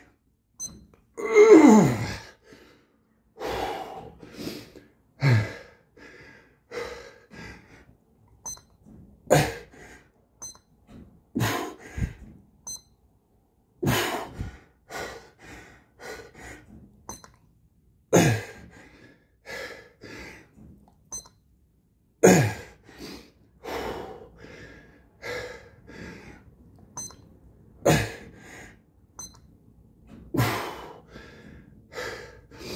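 A man breathing hard through a long set of push-ups: forceful exhalations and gasps come every two to four seconds, some with a voiced sound that drops in pitch.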